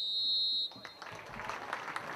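A referee's whistle gives one steady, high blast of under a second, ending a minute's silence before kick-off, and the crowd then breaks into applause.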